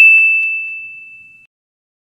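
A single bright ding from an intro sound effect: one high ringing tone struck once, fading out over about a second and a half, with two faint ticks just after the strike.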